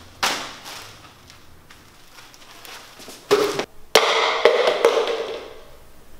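A series of knocks and impacts: a sharp knock just after the start, a short thud a little past three seconds, then the loudest, a sudden crash about four seconds in whose ringing fades over a second or so.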